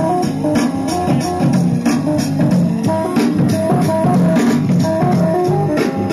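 Hip-hop beat played from an E-mu SP-1200 sampling drum machine: a repeating sampled keyboard loop over a steady drum pattern.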